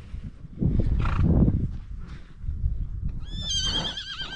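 A horse neighing near the end: a high whinny that quavers as it goes on. About a second in there is a loud, noisy rush.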